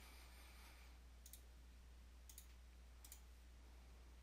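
Near silence with a low hum, broken by about three faint computer mouse clicks.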